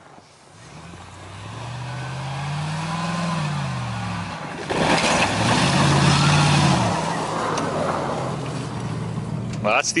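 Pickup truck engine revving up as it accelerates along a snowy trail, rising in pitch and then briefly easing off. About five seconds in there is a sudden loud rush of breaking ice and splashing water as the truck hits an iced-over puddle at speed, with the engine revving hard through it before fading as it passes.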